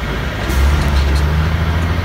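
Truck engine and road noise heard inside the cab while driving, a steady low rumble, with a sharp click about half a second in.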